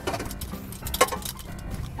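Metal seat-harness buckle and straps clinking and rattling as they are pulled across, with one sharp click about a second in, over faint background music.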